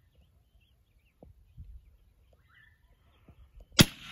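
A single .30-06 rifle shot, sharp and very loud, near the end after a few seconds of near quiet.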